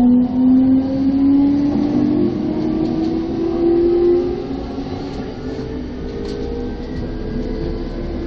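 Electric commuter train accelerating, its motor whine rising steadily in pitch over the first few seconds over the rumble of the running gear. Another train runs close alongside on the next track at the start.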